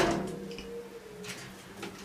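A sharp thump right at the start that dies away over about half a second, followed by a faint steady hum and a few light clicks.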